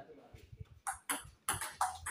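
Table tennis ball clicking off bats and the table during a rally, with a run of quick, irregular hits in the second half.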